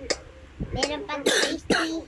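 A child's voice making short vocal sounds, with two coughs a little past the middle.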